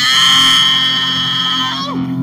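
A singer holds one long, loud note with a wavering pitch over guitar accompaniment, the note bending down and breaking off near the end.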